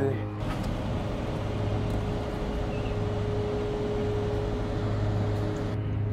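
Steady road and engine noise heard from inside a moving car's cabin, with a constant low hum underneath.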